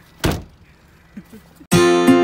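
A single thump against a car about a quarter second in, then faint small knocks; near the end, acoustic guitar strumming cuts in suddenly and loudly.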